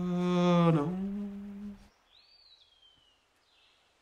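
A man's voice singing in a slow chant-like style, ending a line on a long held note that fades out about two seconds in, followed by near silence.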